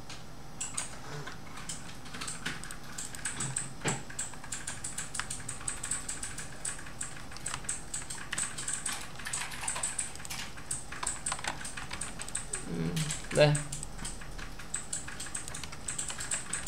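Computer keyboard typing: quick, irregular runs of key clicks.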